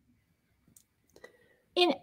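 A pause in the conversation with a few faint, short clicks, then a woman's voice starts again near the end.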